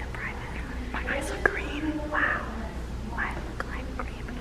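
Two young women whispering close to the microphone, with a single sharp click about one and a half seconds in.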